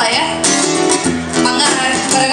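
Two acoustic guitars playing a rhythmic accompaniment together, live.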